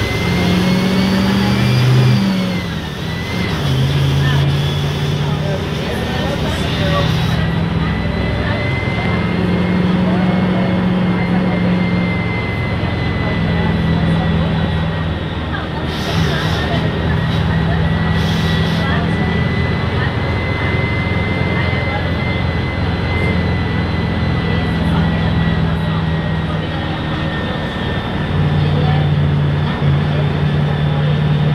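Interior sound of a Mercedes-Benz OF-1519 front-engined city bus under way, its diesel engine note stepping up and down as the bus speeds up and eases off, with a steady high whine over the top. About halfway through come two brief hisses.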